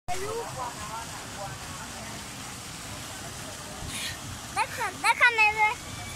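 A steady rushing noise out on open water. Near the end, a high-pitched voice calls out in a few quick rising and wavering sounds, the loudest part.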